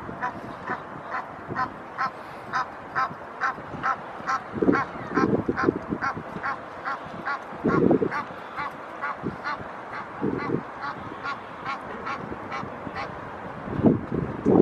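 Egyptian goose honking in a steady rapid series, about two to three short calls a second, stopping about a second before the end. A few low gusts of wind hit the microphone.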